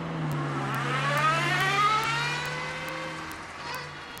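A car engine pulling away: a steady low hum with a whine that rises in pitch as it accelerates, loudest about two seconds in, then fading as it goes.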